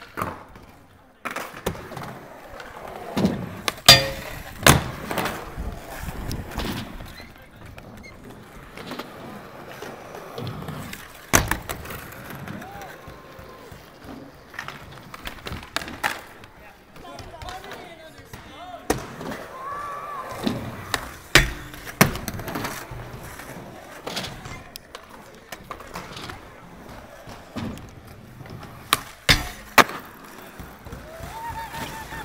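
Skateboard wheels rolling on concrete, broken by sharp cracks and slaps of boards popping and landing, scattered through the whole stretch.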